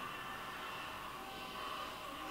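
Steady low hiss of room tone, with no distinct sound event.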